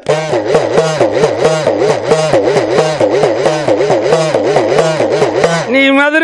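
Udukkai, the hand-held hourglass drum, played solo: a fast, even run of strokes whose pitch swoops up and down as the lacing is squeezed and released. A sung note comes back in just before the end.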